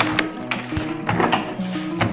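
Background music with steady held notes, with a few sharp clicks and paper rustles as the pages of a drawing book are turned by hand.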